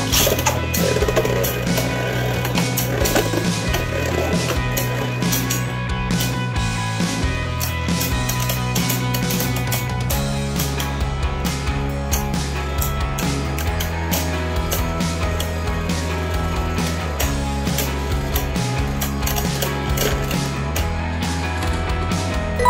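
Two Beyblade spinning tops whirring and grinding on a plastic stadium floor, with frequent sharp clicks and knocks as they clash, over background music with a steady bass line.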